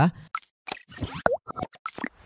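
Cartoon-style sound effects of an animated intro: a quick run of short pops and clicks, with one bending 'bloop' about a second and a quarter in.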